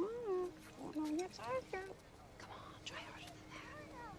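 A hushed female voice making short sing-song sounds that rise and fall in pitch, mostly in the first two seconds. A faint steady held tone lies underneath.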